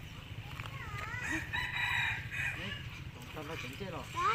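A rooster crowing once: one long held call starting about a second and a half in and lasting about a second.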